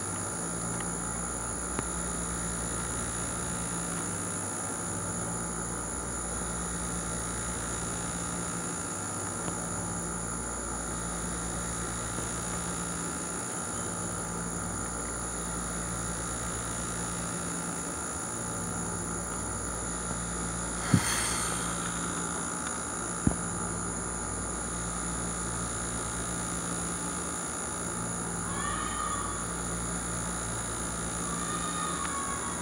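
Steady hum with a high whine above it, holding level throughout; two short sharp clicks about two seconds apart come roughly two-thirds of the way through.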